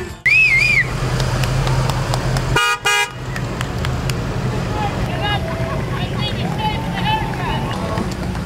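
Parade street noise: a crowd calling and whistling along the route over a low vehicle engine hum, with a short warbling whistle near the start and a brief car horn toot about three seconds in.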